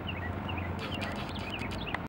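A bird repeating short chirps that fall in pitch, a few notes every half second or so, over a steady low rumble. From just under a second in, a series of light, sharp clicks comes in, the last and loudest near the end.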